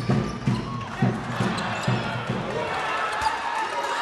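Basketball game in a sports hall: a steady low thudding beat about twice a second that fades out a little past halfway, under a crowd's voices.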